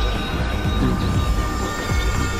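Suspense film score: a low rumbling, throbbing drone with repeated falling low pulses and faint steady high tones above it.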